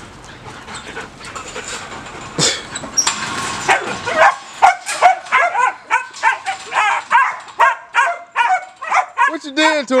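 A protection-bred puppy about two and a half months old barking aggressively, a rapid run of short, high-pitched yaps starting about three seconds in.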